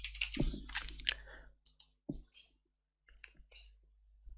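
Computer keyboard typing: a quick run of key clicks over the first two seconds, then a few more separate clicks a little past three seconds in.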